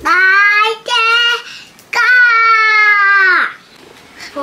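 A child's voice singing three long held notes at a steady pitch, the last and longest sliding down at its end.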